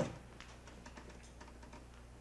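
A single sharp knock, then a quick, irregular run of faint light clicks and taps over a steady low hum.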